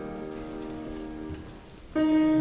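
The last chord of a psalm tune played on a grand piano, dying away, over the rustle and shuffle of a congregation rising to its feet. Congregational singing begins right at the end.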